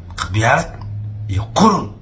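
A man's voice in two short bursts, one near the start and one near the end, over a steady low hum.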